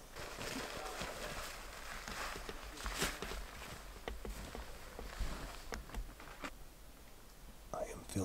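Footsteps crunching through powdery snow, faint and uneven.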